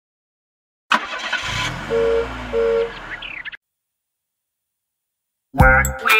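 Cartoon car sound effect: an engine starting and revving up and down once, with two short horn beeps in quick succession in the middle. It cuts off suddenly a little over halfway through.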